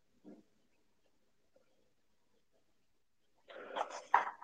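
Faint room tone, then near the end a dog vocalising briefly, heard over an online video call.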